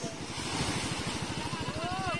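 A small engine running steadily at a rapid, even beat, over the hiss of surf washing onto the beach.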